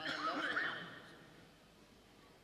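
A person's voice: a short wavering vocal sound in the first second that fades away, leaving the room near silent for the rest.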